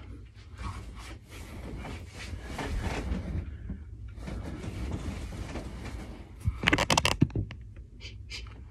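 Handling noise from a phone being moved about: rubbing, rustling and a low rumble, with a cluster of loud knocks and rubs about seven seconds in.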